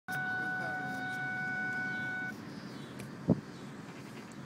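A steady high tone held for a little over two seconds, then cut off suddenly, over the low running noise of a minivan on the move. A short loud thump comes about three seconds in.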